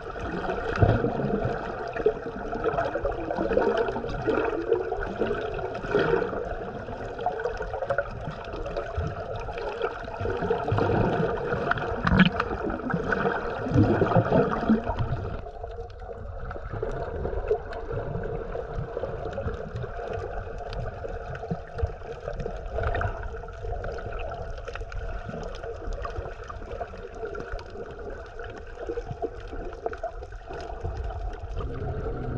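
Water gurgling and churning around an underwater camera moving over a reef, with a steady hum beneath. The churning eases a little past halfway.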